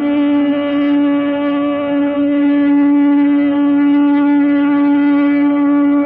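Carnatic concert music in raga Todi: one long note held steady and unornamented, rich in overtones.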